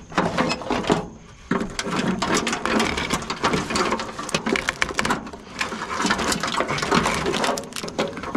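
Wiring harness in corrugated plastic loom being pulled through a pickup cab's firewall: a continuous rattling, scraping and clicking as the loom, wires and connectors drag against the sheet metal, with a short pause about a second in.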